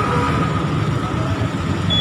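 Low, steady rumble of road traffic passing on the road behind a microphone. A thin, steady high tone comes in near the end.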